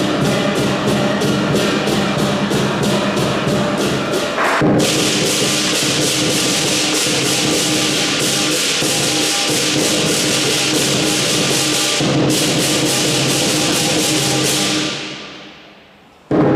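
Southern Chinese lion dance percussion: big drum, cymbals and gong playing a fast, even beat. About four and a half seconds in, the cymbals go into a continuous rolling crash, broken briefly near twelve seconds, over the gong's steady ring. The sound fades away near the end.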